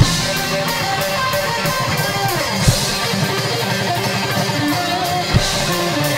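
Live rock band playing a guitar-driven passage: strummed electric guitars over bass and drum kit, steady and loud, with a couple of harder drum hits partway through and near the end.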